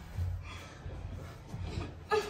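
Bare feet of several people thudding and shuffling on a carpeted floor during dance-style exercise steps, a few dull irregular thuds with scuffing between them.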